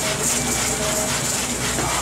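Dal pakoras deep-frying in hot oil in a kadhai: a steady, crackling sizzle.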